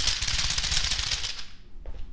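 A barber's hands striking a client's back through his shirt in a fast run of rapid percussive massage strikes, loud and rattling for about a second and a half before easing off.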